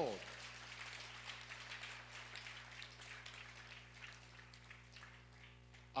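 A congregation applauding: a faint, dense patter of many hands clapping that dies away near the end.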